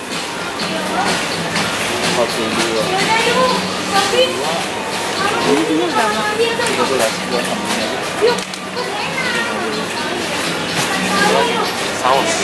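Shop ambience: indistinct voices talking over background music.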